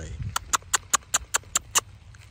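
A person clicking the tongue about eight times in quick, even succession, roughly five clicks a second: a clucking call to a horse.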